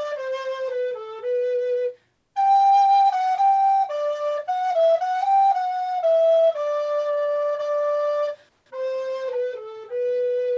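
A single recorder playing a Renaissance almande melody with tongued articulation: a line of moving and held notes, with two short breaks for breath, about two seconds in and again near the end.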